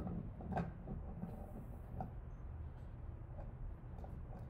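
Plastic magnetic wands being pushed across a wooden tabletop: faint handling and rubbing with two light knocks, about half a second in and about two seconds in, over a low room hum.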